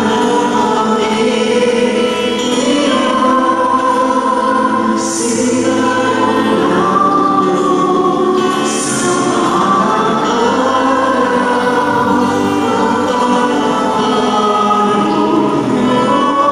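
Choir singing a hymn, several voices holding long notes.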